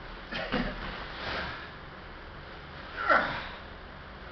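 Hard breathing of a man straining to lift a sandbag: short forceful exhales near the start, then a loud sharp exhale falling in pitch about three seconds in as he drives the bag overhead.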